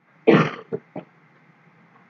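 A man clearing his throat: one short rasp, followed by two smaller catches just before a second in.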